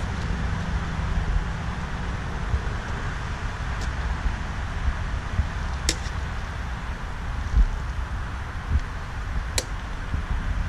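Wind buffeting the microphone outdoors: a steady, uneven rumble over background noise, with two sharp clicks about six seconds in and near the end.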